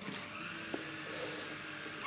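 ESKY 150 mini flybarless RC helicopter's electric motor and rotor running, a steady high whine over a whirring hiss; the whine stops near the end.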